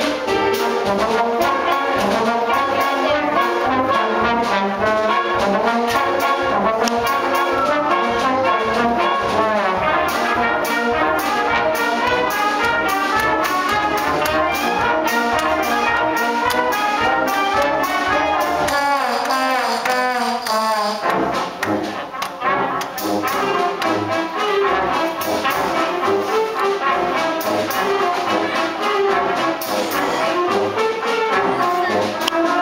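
A beginning middle-school concert band of clarinets and brass playing a piece together. About two-thirds of the way through, the low parts drop out for a couple of seconds, then the full band comes back in.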